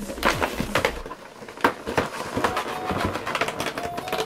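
Hands working open a cardboard Pokémon card collection box: irregular clicks, taps and rustles of packaging being handled.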